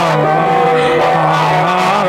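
Experimental electronic music played live: layered held tones that slide slowly in pitch, with a low tone rising a little near the end.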